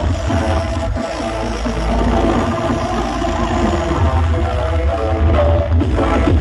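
Loud electronic dance music blasting from a truck-mounted sound-system speaker wall, with a heavy, continuous bass.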